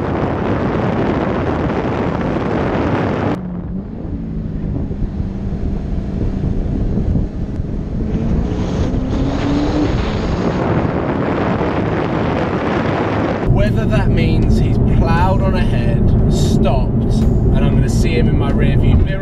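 Jaguar F-Type driving on a twisting mountain road, picked up by a bonnet-mounted camera. Wind buffets the microphone for the first few seconds, then the engine note comes through, rising in pitch around the middle as the car accelerates. A voice comes in near the end.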